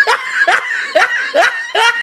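Laughter in short, rhythmic bursts, about five in two seconds, each falling in pitch.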